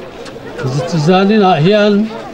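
A man's voice speaking into a handheld microphone over a public-address system, in drawn-out, pitch-gliding phrases. The voice is quieter for the first half-second.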